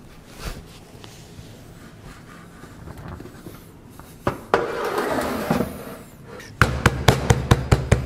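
Flat hands rapidly patting the base of an upturned ceramic quiche dish sitting on a metal baking tray, about six quick slaps a second over the last second and a half, to loosen the baked quiche from the dish. Earlier comes a single knock and a brief scraping sound as the dish and tray are handled.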